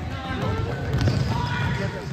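A basketball dribbled on a hardwood gym floor, a quick run of bounces mixed with players' running footsteps, with a harder bounce about a second in and voices in the background.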